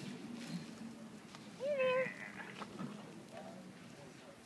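A raccoon gives one short whining call, a rising cry held for about half a second, a little under two seconds in, among faint scuffling of raccoons foraging in the dirt.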